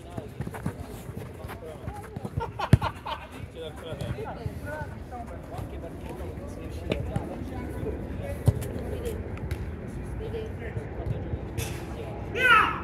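A football thudding sharply on a five-a-side pitch, once loudly about three seconds in and again past eight seconds, among players' shouts and calls.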